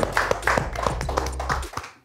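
Two people clapping their hands rapidly, the claps dying away shortly before the end.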